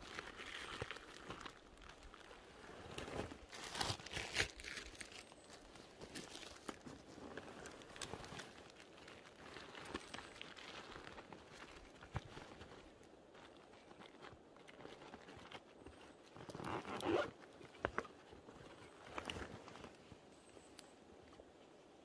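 Faint, scattered crunching and crackling of dry forest-floor litter (pine needles, twigs, bark) being stepped on or moved through, with louder bursts about four seconds in and again around seventeen seconds.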